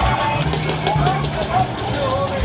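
Busy arcade din: game machines and background voices, with a steady low hum from about half a second in for about a second and a few short knocks.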